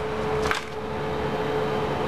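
Steady hum of elevator machine-room equipment, with one constant mid-pitched tone over a low even noise, and a single sharp click about half a second in as papers on a clipboard are handled.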